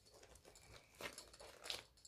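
Faint rustling and crinkling of a cloth project bag being handled and opened, with two slightly louder rustles, about a second in and near the end.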